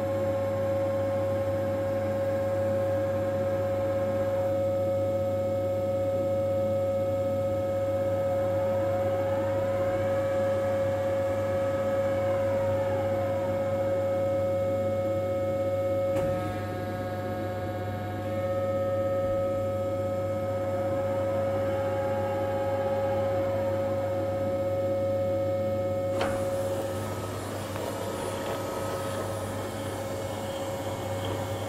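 Reishauer RZ 362A gear grinding machine running: a steady whine over a low hum, with a second tone that rises and falls twice, about ten seconds in and again a little past twenty seconds. The steady whine stops near the end.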